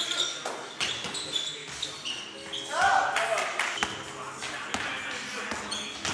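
A basketball bounces repeatedly on a hardwood gym floor during play, with sneakers squeaking and players calling out.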